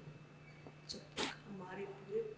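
Quiet speech with a short, sharp hiss of breath about a second in, over a steady low hum.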